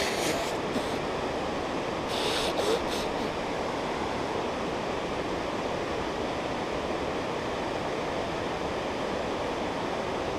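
Steady rush of a mountain stream running below the trail. A nose is blown into a tissue at the start and again about two seconds in.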